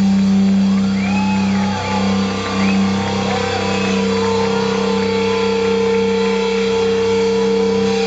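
Live metal band letting a distorted chord ring out as a loud, steady drone through the amplifiers, with high sliding tones over it in the first few seconds.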